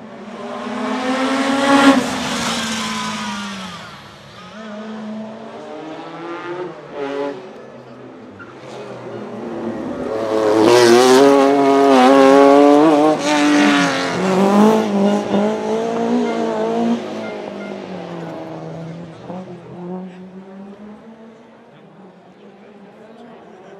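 Two rally cars passing at speed, each engine revving hard with pitch rising and falling through gear changes. The first pass, about two seconds in, is a Lancia Delta S4's twin-charged four-cylinder. The longer, louder pass in the middle is a Lancia Stratos accelerating out of a hairpin.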